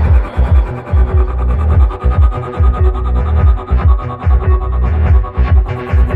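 Full-on psytrance: a steady pulsing kick drum and rolling bassline under electronic synth lines, about two beats a second. High-pitched percussion comes in near the end.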